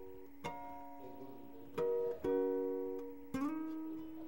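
Acoustic-electric guitar: four chords are struck one at a time, and each rings on and fades before the next. The two in the middle are the loudest.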